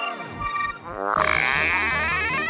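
Cartoon sound effects: a falling pitch glide, then about a second in a rising, wobbling swoosh as upbeat music with a bass beat comes in.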